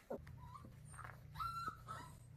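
Faint high-pitched whines from a four-week-old Labrador retriever puppy: a short one about half a second in and a longer, level one about a second and a half in.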